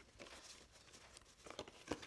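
Faint handling of a small stack of paper word cards being shuffled, with a few soft clicks of card against card in the second half.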